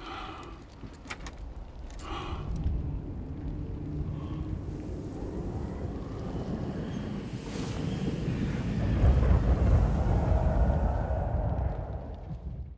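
Film sound design: a low, wind-like rumble that swells in level near the end, with a few sharp clicks in the first two seconds.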